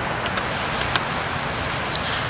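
Steady rushing wash of sea surf breaking on the beach close by, with a few faint clicks.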